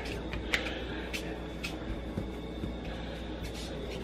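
Faint rubbing of hands rolling dough on a thin plastic cutting board, with a few light ticks, over a steady low hum.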